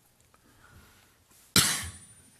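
A man coughs once into a desk microphone, a single sharp, loud cough about one and a half seconds in.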